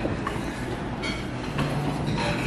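Steady low rumbling noise with a faint low hum, with no speech over it.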